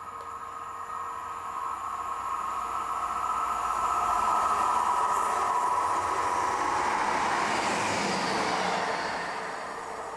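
Class 158 diesel multiple unit approaching and running past, its engine and wheel-on-rail noise growing louder to a peak about halfway through and easing off near the end as it goes by.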